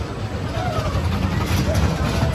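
Spinning roller coaster car running along its steel track, a low rumble of the wheels that grows louder as the car approaches, with faint voices of people.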